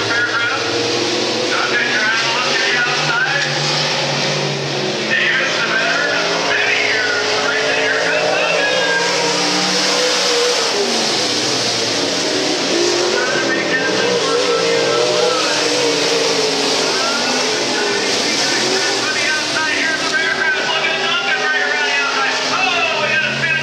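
Pro Stock dirt-track race car engines at race speed, rising and falling in pitch as the cars accelerate and lift around the oval.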